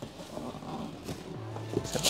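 Quiet rustling of paper and cardboard as a shoebox lid is lifted off and the paper inside is handled, with a few light knocks near the end.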